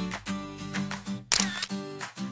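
Background music: a melody of short, evenly pulsed notes, with a brighter, harsher burst about a second and a half in.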